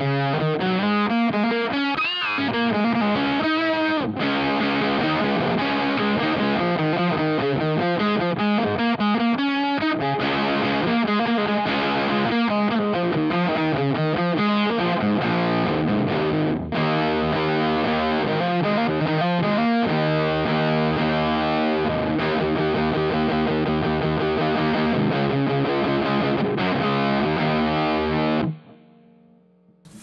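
Electric guitar played through a Boss FZ-2 Hyper Fuzz pedal, giving a heavily distorted tone. It plays moving riffs with a string bend early on, then long held chords, and stops abruptly shortly before the end.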